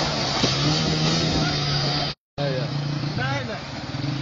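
Water rushing over a canal weir with a small motorcycle engine running steadily. The sound drops out abruptly for a moment a little past halfway, then shouting voices come in over the rushing water.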